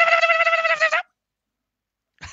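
A man's high-pitched voice holding one long sung note in falsetto, which cuts off suddenly about halfway through.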